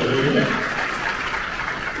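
Audience applauding, a steady clatter of clapping that slowly thins out, with a brief spoken "hi" at the start.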